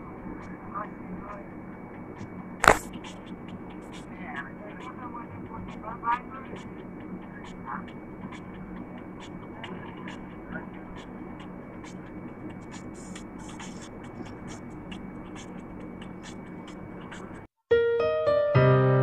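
Steady vehicle cabin rumble with faint background voices and a sharp click about three seconds in. Piano music cuts in right at the end.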